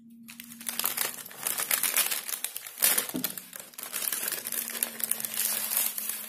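Paper fast-food bag crinkling and rustling in a dense run of small crackles as it is opened and handled, louder around one, two and three seconds in.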